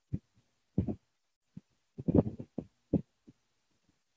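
Irregular muffled thumps, about ten of them, close to the microphone, with a loud cluster about two seconds in: handling or bump noise.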